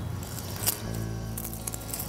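Soft background music with steady low sustained notes, and a brief faint click about two-thirds of a second in.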